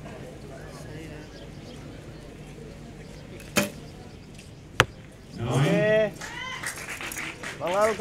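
A recurve bow shot: a sharp crack of the bowstring on release, and about a second later a louder, sharper smack of the arrow striking the target. A man's voice shouts twice after the impact.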